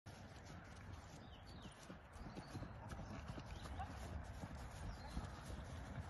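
A horse's hooves thudding on grass turf at the canter, in an irregular run of dull beats over a low steady rumble.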